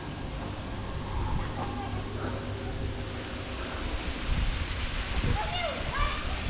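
Steady rushing hiss of water pouring from a swimming pool's row of waterfall spouts into the pool, growing louder toward the end, over a low wind rumble on the microphone.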